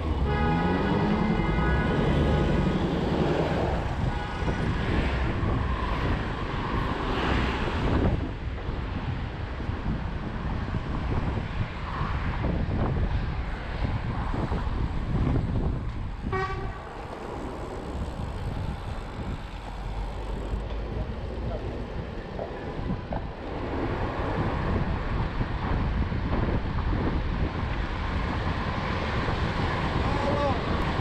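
Road noise from a bicycle ridden in city traffic, with vehicles passing close by. A vehicle horn sounds for about three seconds at the start, and a short tone comes again about sixteen seconds in.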